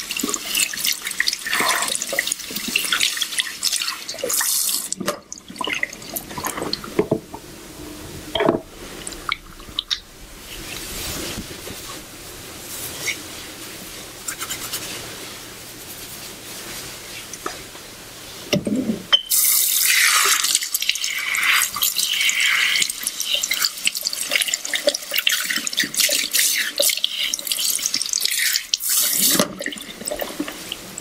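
Handheld shower sprayer rinsing hair over a salon shampoo basin, water spraying onto the head and splashing into the sink. The spray runs for the first few seconds, gives way to a quieter stretch of scattered splashes, then runs again through most of the last third before stopping just before the end.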